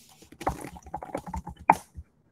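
Typing on a laptop keyboard: a quick run of irregular key clicks, with one louder keystroke near the end.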